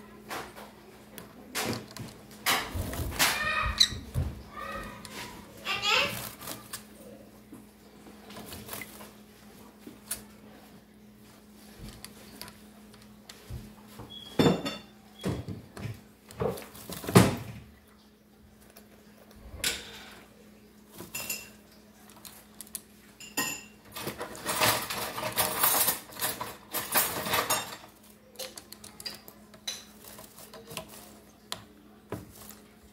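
Green-cheeked conure bathing in a shallow plastic tub of water in a stainless steel sink: irregular splashing and wing flutters, with a few sharp knocks against the tub and sink. There is a longer spell of flapping and splashing near the end.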